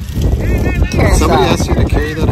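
People talking, with a low rumble of wind on the microphone underneath.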